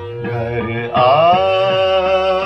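Hindustani classical singing in Raag Lalit: over a steady drone, the singer's voice glides up into a long held note about a second in, which is louder than what came before.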